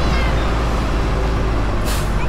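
Fire engine driving slowly, heard from its roof as a steady low rumble from the engine and wind on the microphone. A few short high chirps sound near the start, and a brief hiss comes just before the end.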